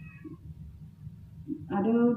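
A brief pause in a woman's speech through a public-address system, with a low steady background rumble and a faint short higher-pitched sound at the very start. Her amplified voice resumes near the end.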